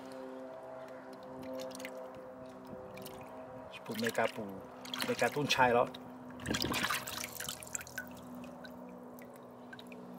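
Water sloshing and splashing in a stainless-steel basin as hands rub and rinse pieces of skinned squirrel, with a splashy burst a little past the middle and water dripping back into the basin near the end.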